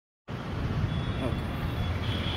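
Distant city traffic noise, a steady low rumble, with faint voices in it.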